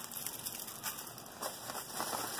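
Soft crackly rustling and crinkling of a plastic bag and a paper mailing envelope being handled.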